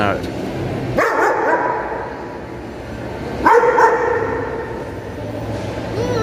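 A dog barking in a large, echoing covered hall: one bark about a second in, then two quick barks about three and a half seconds in, each ringing on briefly.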